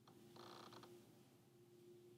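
Near silence, with a faint steady hum and a faint brief rustle about half a second in.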